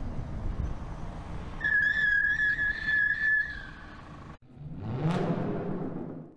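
BMW 3 Series E90 sedan rolling slowly over a test-track surface with a low rumble, overlaid for about two seconds in the middle by a loud, steady, high whistle-like squeal. The sound cuts off abruptly near the end, followed by a swelling whoosh of an outro logo sting that rises and fades.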